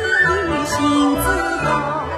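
Yue opera singing: a woman's voice in a sustained, ornamented melodic line with sliding notes, over a traditional Chinese instrumental accompaniment.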